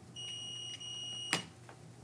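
Electronic beep: a high steady tone a little over a second long, with a brief break in the middle, ending in a sharp click.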